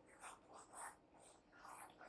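Near silence, with a few faint, short scratches of a stylus on a drawing tablet while handwriting is erased on screen.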